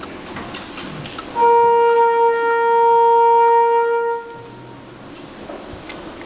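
A single wind instrument holds one steady note for nearly three seconds, starting about a second and a half in and stopping cleanly, with faint ticks and rustling around it.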